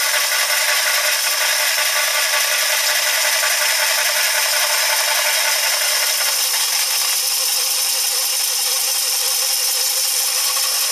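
Bandsaw running steadily while its blade cuts slots into a small piece of wood.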